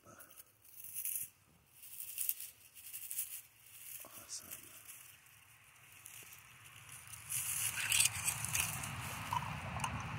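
Rustling and crackling of dry pine needles and forest-floor litter being handled close up. It grows louder and fuller over the last few seconds.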